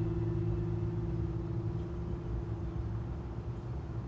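Dramatic background score: a low, steady drone under a single held, ringing gong-like note that slowly fades and dies away near the end.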